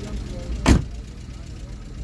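A car door thumping once, a single sharp knock about two-thirds of a second in, over a low steady rumble.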